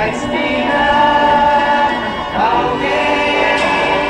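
Live rock band performance: several voices sing long held notes in harmony over the band, with one sung line swooping up and back down a little after halfway.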